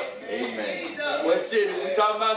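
A man's voice speaking: speech only.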